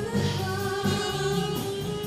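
Live pop band playing a song with a female lead vocal: drums with regular cymbal strokes, bass guitar and keyboard under held sung notes.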